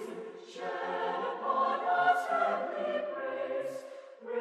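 A Salvation Army songster choir, a mixed-voice choir, singing a hymn in harmony, several voices holding chords together.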